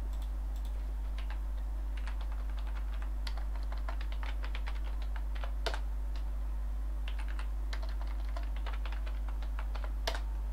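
Typing on a computer keyboard: a run of irregular key clicks as commands are typed into a command prompt, over a steady low hum.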